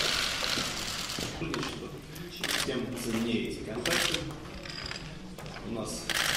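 Rapid, overlapping clicking of press photographers' camera shutters firing in bursts, with indistinct talking among the people in the room.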